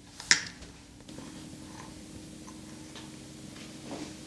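A single sharp click as the wire balancing toy is set down on a plastic bottle cap, then a faint, steady low hum with a few faint ticks while the toy rocks.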